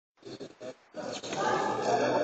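Children's voices in a sports hall: a few short shouts, then from about a second in a continuous, echoing din of many voices.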